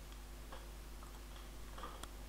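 A few faint, irregular clicks from a computer mouse and keyboard in use, the strongest cluster near the end, over a low steady hum.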